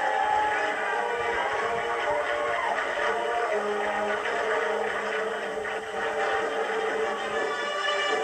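High school marching band playing as it marches, its held notes sounding like sustained chords that shift in pitch now and then.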